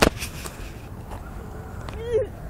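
A single sharp knock right at the start, followed by a few fainter clicks within the next half second, over steady low background rumble.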